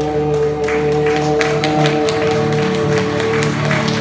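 The band's final chord on acoustic guitar and other instruments is held and dies away near the end, while the audience starts clapping about half a second in.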